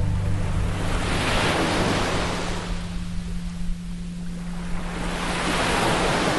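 Ocean surf breaking and washing up a sand beach. The rush swells about a second in, eases in the middle and builds again near the end. Under it runs a steady low hum of a 174 Hz tone.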